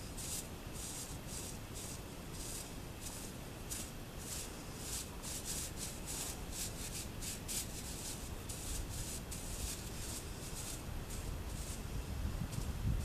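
Straw corn broom brushing sand off a horse's coat: a dry, hissing scrape with each stroke, repeated in quick, irregular strokes of about two a second.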